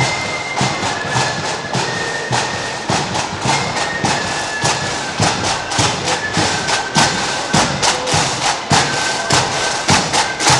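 Marching flute band playing a march: shrill flute melody over loud, steady snare and bass drum beats.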